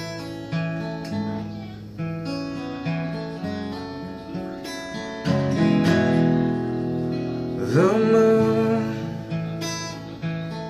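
Acoustic guitar playing a slow intro, chords struck about once a second and left to ring. About eight seconds in a voice briefly slides up in pitch and wavers over the chord.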